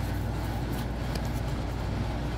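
Steady low background hum with a few faint light rustles.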